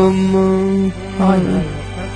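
A young man's voice singing a long held note, then a shorter note that slides down in pitch, without words.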